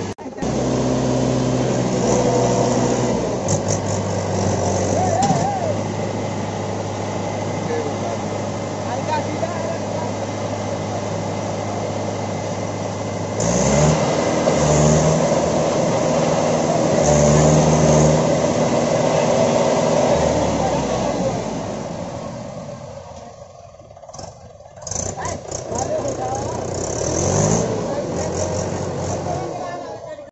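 Mahindra 475 DI tractor's diesel engine running under load as it strains to pull a sand-laden trolley out of soft ground. It runs steadily at first, revs up hard about halfway through, falls away to a brief lull a little later, then revs up again near the end.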